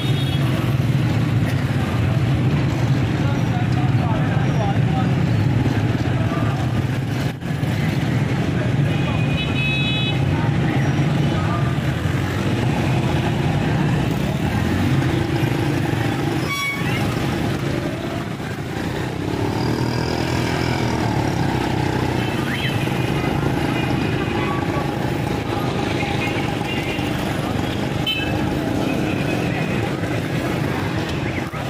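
Busy street traffic: motorcycle and car engines running close by, rising and falling in pitch now and then, with short horn toots several times over the steady background of crowd voices.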